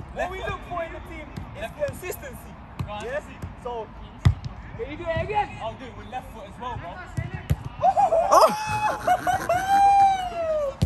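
A football being kicked back and forth on artificial turf: several sharp thuds of the ball being struck, the loudest about four seconds in. Voices talk in the background, and one person gives a long drawn-out call near the end.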